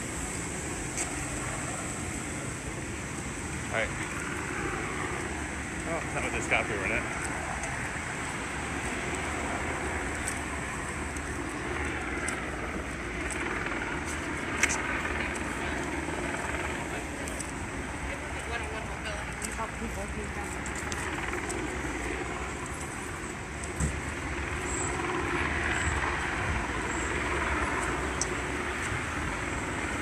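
Street ambience: cars passing on the road, with indistinct voices from a crowd of people.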